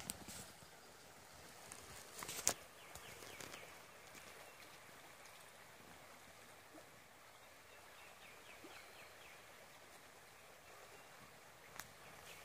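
Faint, steady murmur of a shallow woodland creek, with a few sharp clicks and rustles; the loudest click comes about two and a half seconds in.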